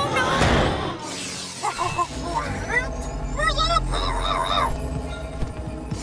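Animated-cartoon sound-effects mix: a loud crash at the start, then short wavering cries, with a thin whine rising slowly over a low rumble through the second half.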